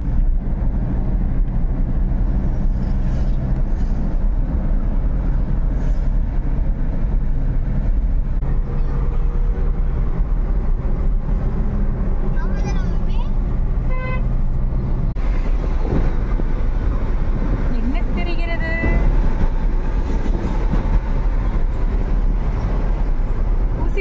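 Steady engine drone and road rumble inside the cabin of a car driving on a highway, with a short horn toot about halfway through.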